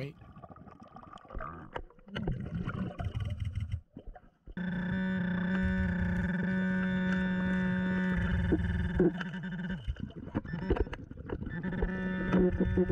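Handheld metal-detecting pinpointer probe signalling a metal target underwater: a steady buzzing tone lasting about five seconds, starting about four and a half seconds in, after softer irregular handling and water noise.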